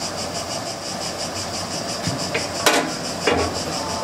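National Gas Engine stationary gas engine running slowly, a steady mechanical sound with two sharp metallic knocks about half a second apart in the second half.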